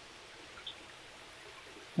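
Faint steady trickle of water, with one small drip about two-thirds of a second in, as fish are lifted by hand from a plastic bucket of water.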